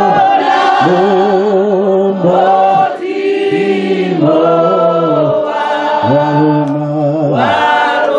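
A man singing a slow worship song into a microphone, in short phrases of long held notes, one after another.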